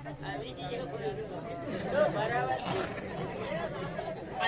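Speech and chatter: several voices talking.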